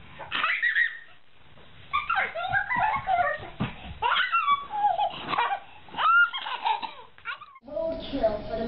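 A baby laughing in repeated short fits, with a pause of about a second near the start.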